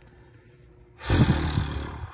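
A man's loud, rough, strained growl starts suddenly about a second in and runs on.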